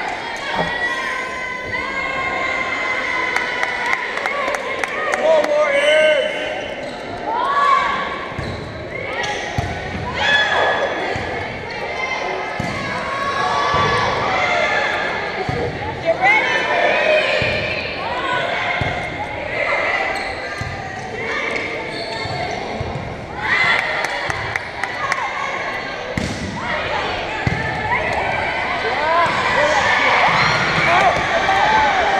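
Voices shouting and calling in a large, echoing gym, with the thumps of a volleyball being struck and bouncing on the hardwood court several times.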